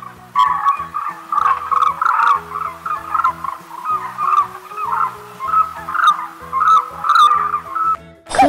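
Cranes calling again and again in short calls, a couple each second, over background music of steady low notes.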